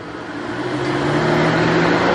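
A car approaching along the road, its engine hum and tyre noise growing steadily louder.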